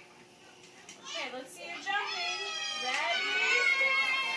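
A young child's voice in high-pitched wordless vocalizing, starting about a second in and turning into long, held, sliding cries in the second half.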